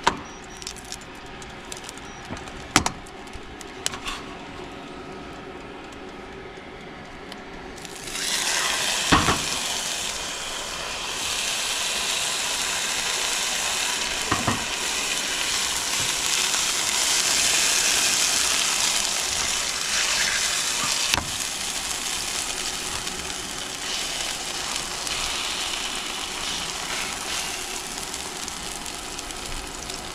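A corn tortilla laid into hot oil in a frying pan about eight seconds in, setting off a loud, steady sizzle of frying. A few sharp clicks sound over the sizzle.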